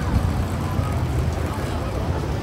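Busy pedestrian street ambience: indistinct chatter of passersby over a steady low rumble.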